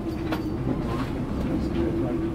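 Boat engines running at low speed, a steady low rumble with a faint steady hum over it.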